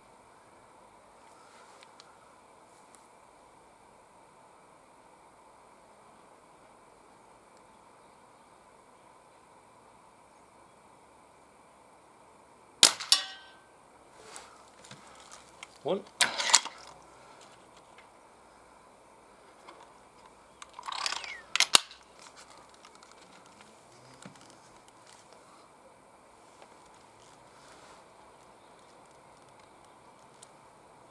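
A .22 Diana Mauser K98 underlever spring-piston air rifle fires once, a single sharp crack with a short ring, after a long quiet stretch. About eight seconds later comes a brief cluster of sharp clicks and a rattle.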